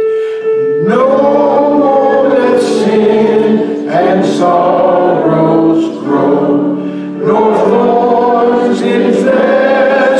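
Congregation singing a hymn together with keyboard accompaniment. A sustained keyboard chord gives way to the voices about a second in, and the singing runs on in phrases with short breaths between them.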